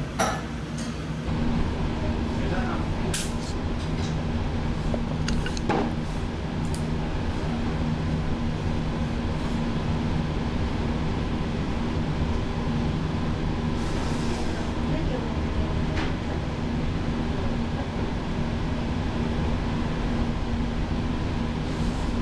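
Ramen shop ambience: a steady low hum with indistinct background voices and a few short clinks of bowls and utensils.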